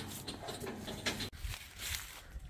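Quiet outdoor background with a few faint rustles and light taps.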